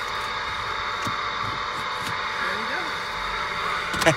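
Cobra CB radio giving a steady static hiss from its speaker in the car. A faint voice-like sound comes through a little past halfway.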